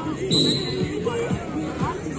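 A short, sharp referee's whistle blast about a third of a second in, over steady crowd chatter and background music.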